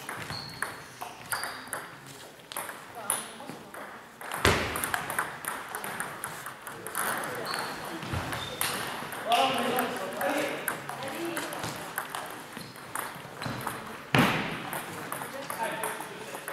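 Table tennis ball clicking off the table and the bats in a rally, the sharp taps echoing in a large hall. Voices come in between, with two loud bursts, one about a third of the way in and one near the end.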